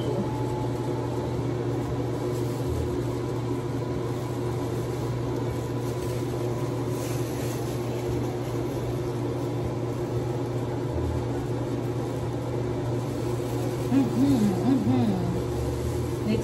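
Bathroom exhaust fan running with a steady hum. A voice comes in briefly near the end.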